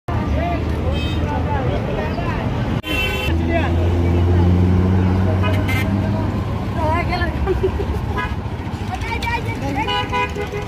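Roadside traffic with voices talking over it: a vehicle horn toots briefly about three seconds in, and a vehicle engine then runs steadily close by for about three seconds.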